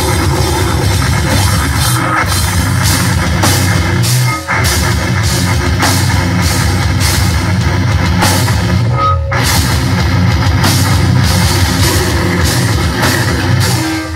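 Live metal band playing loudly: distorted guitars, bass and a pounding drum kit, with two brief stops in the music about four and a half and nine seconds in.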